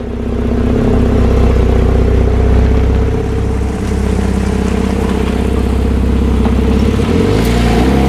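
A Porsche 911 Carrera GTS's turbocharged flat-six engine runs at a steady idle. Near the end the pitch rises as the car pulls away.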